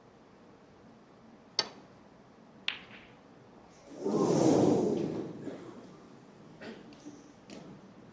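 Snooker shot: a sharp click of cue tip on cue ball, then a crisp ball-on-ball click about a second later. About two seconds after that, the arena crowd gives a long rising and fading "ooh" as the red fails to drop and stays near the pocket. A few faint ball clicks follow.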